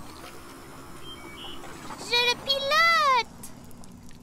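A child's high voice calling out in a sing-song, rising-then-falling line about two seconds in, over a faint steady background.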